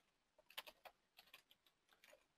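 Faint computer keyboard typing: an irregular run of light keystrokes as a short phrase is typed.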